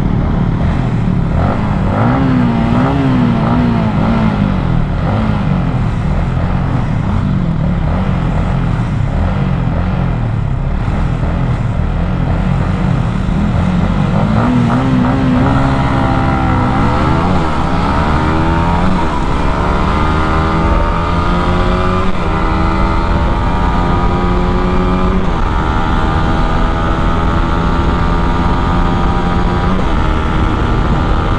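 Yamaha MT15's 155 cc single-cylinder engine revving in short bursts at the start line, then launching about halfway through and accelerating hard, its pitch climbing and dropping back with each of several upshifts. Wind rush runs under the engine.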